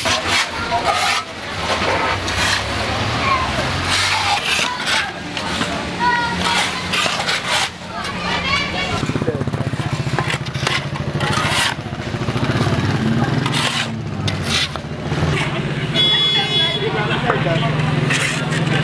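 Voices of people talking amid outdoor street noise, with short scrapes and knocks throughout, consistent with metal shovels working sand. A motor vehicle engine runs low and steady through the second half, and a brief high buzzy tone sounds about two seconds before the end.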